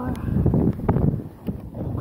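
Wind buffeting a handheld camera's microphone, with rustling handling noise and a knock about a second in; a short exclamation of 'oh' at the very start.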